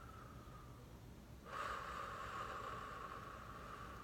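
A person breathing out long and slowly through the nose, a sigh that starts suddenly about a second and a half in and fades gradually.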